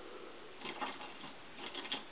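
Close rustling of natural hair being twisted and tucked by hand right beside the microphone, in two short crackly bursts: one about a second in, the other near the end.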